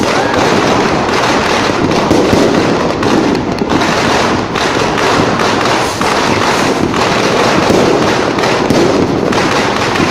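Loud, unbroken crackling and popping of many firecrackers and fireworks going off at once, dense and without pause.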